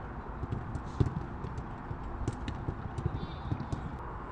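Footballs being kicked back and forth on a grass pitch: a run of short, dull thuds, the loudest about a second in.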